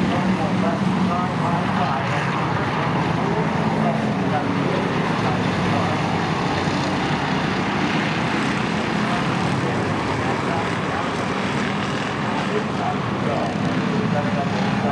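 A pack of pure stock race cars circling a short oval, their engines blending into a steady, dense drone that holds at the same level throughout.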